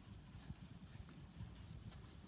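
Faint, irregular soft thuds of sheep hooves and footsteps on sand as the flock trots along.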